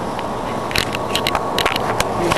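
Handling noise: a run of small sharp clicks and scrapes starting about a second in, over a steady hiss with a faint high hum.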